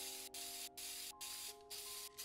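Aerosol spray-paint can hissing in short sprays with brief breaks between them, over soft sustained music notes.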